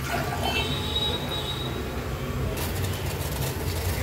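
Water poured from a glass bowl into a stainless steel pot, with a faint high ring in the first second and a half. About two and a half seconds in it gives way to water boiling in the pot over a gas burner.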